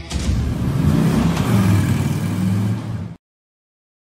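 A motorcycle engine revving, cut off abruptly just after three seconds.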